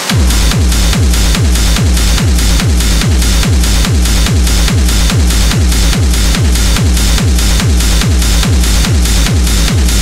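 Industrial techno track: a steady four-on-the-floor kick drum, each hit dropping in pitch, at just over two kicks a second under a dense hiss of hi-hats and noise. The kick comes back in right at the start after a brief drop-out.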